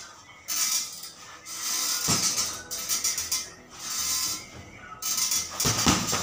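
Boxing gloves striking a hanging heavy bag, with the swish and rustle of a sauna jacket as the arms move between punches; two sharper hits stand out, about two seconds in and near the end.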